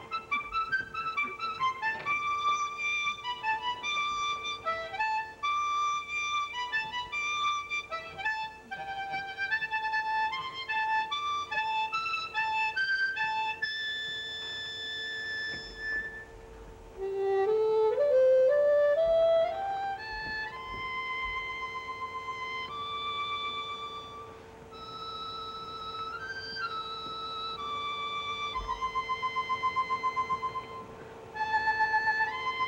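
Harmonica ensemble playing a bright melody in quick runs of notes over one steady held note. About 17 seconds in, a scale climbs step by step, and then the melody carries on in longer held notes.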